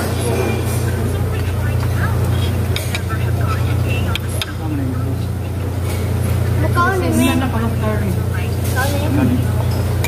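Restaurant dining-room ambience: a steady low hum under background voices, with a few light clinks of metal chopsticks and spoons against dishes.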